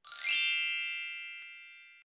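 Logo-sting chime sound effect: a single bright, bell-like ding with a glittery high shimmer at the start, ringing on and fading away over about two seconds.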